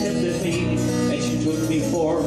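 2013 Taylor 8-string baritone acoustic guitar strummed, its chords ringing at a steady level.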